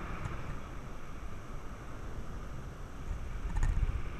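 Wind buffeting the microphone of a parasailer's camera in flight under the canopy: a steady rush of wind noise that grows gustier and louder near the end.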